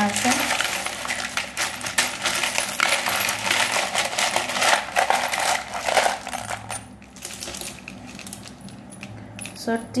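A jumble of plastic alphabet letters, with a few metal ones among them, rattling and clattering as a hand rummages through them in a plastic bowl. It is busy and dense for about the first seven seconds, then thins to scattered clicks.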